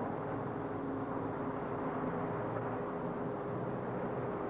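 A pause in speech: a steady background hiss and hum from a microphone and amplifier recording, with a faint steady tone.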